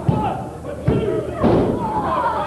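Wrestlers hitting a wrestling ring's canvas mat: a few sharp thuds within two seconds, over spectators shouting.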